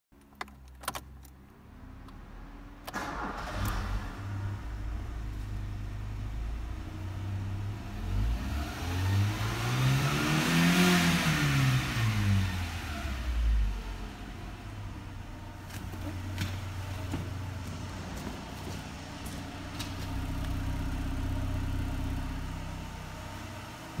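Ford Escort engine starting about three seconds in after a couple of clicks, then idling. It is revved once, smoothly up to about 4,000 rpm and back down, then settles back to idle.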